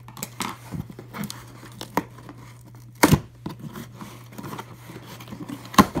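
A box being worked open by hand: scattered tearing, crinkling and scraping of packaging, with two sharp, louder snaps, one about three seconds in and one near the end as it comes open.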